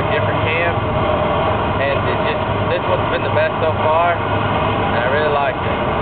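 Indistinct voices over a steady low rumble and hiss, through a poor-quality recording.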